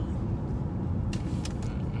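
Steady low rumble of a car's engine and road noise, heard from inside the cabin while driving, with a couple of faint clicks.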